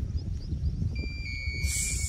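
Wind rumbling on the microphone outdoors, with a steady high-pitched tone starting about halfway through and a short hiss near the end.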